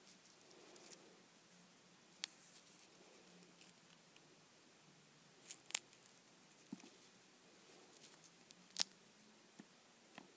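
Hardened, brittle shards of dried red cerium oxide polishing compound snapping and crumbling between fingers: a few sharp cracks, about two, six and nine seconds in, with small crackles in between.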